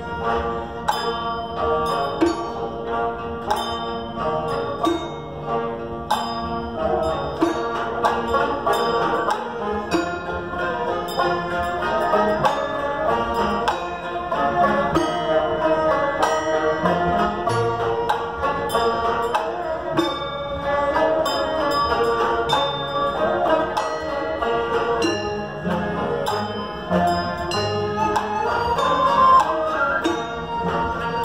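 Traditional Naxi ancient-music ensemble playing live: a guzheng zither, plucked lutes and bowed huqin fiddles, with many quick plucked notes over a held tone.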